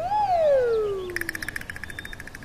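A bird-like whistled note that rises briefly, then slides down in pitch for over a second. About a second in, a fast trill of high chirps overlaps it.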